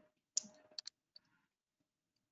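A few faint, sharp clicks clustered between about half a second and a second in, with near silence around them.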